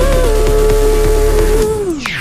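Electronic dance music: a held synth note over steady bass. Near the end the bass drops out and the sound sweeps downward in pitch, a transition between tracks in the mix.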